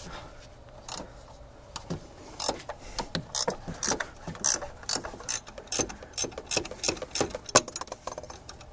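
Ratcheting 15 mm wrench clicking as it backs out a freshly loosened upper engine-mount bolt. A few single clicks come first, then a steady run of about three or four clicks a second from about two seconds in until near the end.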